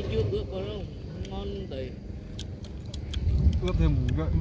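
Faint voices in the background with a low rumble, then a scattered series of sharp clicks in the second half.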